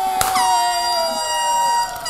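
A sharp bang, then a hand-held air horn sounding one long, steady blast as the start signal of a race.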